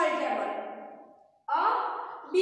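Only speech: a woman's voice draws out a word that fades away over about a second and a half, then after a brief pause she starts speaking again.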